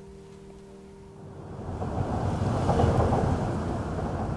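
Low rumble of car traffic crossing the road bridge overhead, swelling up from about a second and a half in and staying loud.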